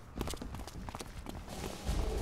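Cartoon sound effect of quick, irregular running footsteps pattering away, with a low rumble building near the end.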